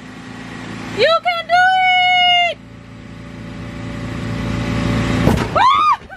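High-pitched held cries of a voice, one long one about a second in and a short rising-and-falling one near the end. Under them runs the steady low hum of a bounce house's electric inflation blower, with a rushing noise that swells toward the end.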